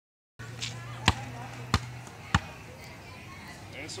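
A basketball bouncing three times on a concrete court: three sharp slaps about six-tenths of a second apart.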